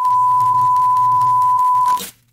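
Television test-pattern tone: a steady 1 kHz reference beep held for about two seconds over a low hum and crackling static, then cut off suddenly.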